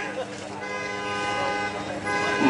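A vehicle horn sounding one long, steady note. It starts about half a second in and cuts off near the end.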